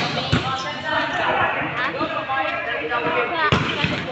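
Sharp smacks of a ball being hit and bouncing on a concrete court, two at the start and two more near the end, under the steady shouting and chatter of players and onlookers.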